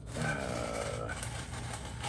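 Styrofoam shipping-box lid squeaking and rubbing against the box as it is worked loose by hand, in short wavering squeaks.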